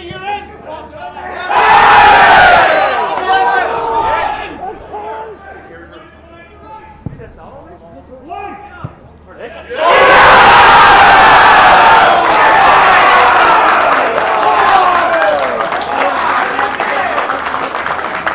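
Football crowd roaring and shouting as a goal goes in about ten seconds in; the roar rises suddenly and stays loud with cheering voices. A shorter burst of crowd shouting comes about a second and a half in.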